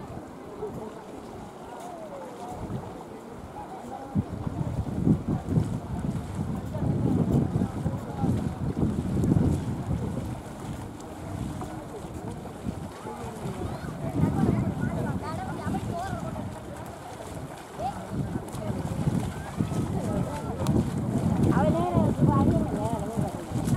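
Wind buffeting the microphone in uneven gusts, with faint, distant voices of people talking underneath.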